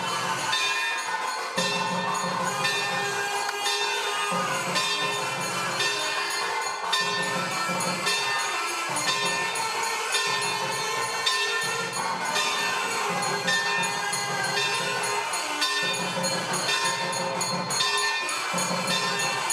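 Temple bells ringing without a break during a lamp offering, among them a brass hand bell, over a low throb that repeats about once a second.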